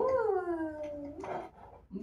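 A person's drawn-out, playful 'whoo' call, starting high and sliding steadily down in pitch over about a second, with a short extra sound just after it.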